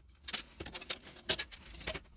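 Metal shielding being peeled off the plastic display bezel of an iBook G3 Clamshell, making an irregular run of sharp crackles and clicks.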